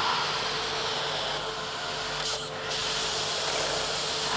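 Faint, steady roar of a missile launch, heard as playback from a video through speakers.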